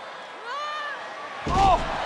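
A wrestler thrown back-first onto a wrestling ring in a fallaway slam: one loud thud about one and a half seconds in, over crowd noise.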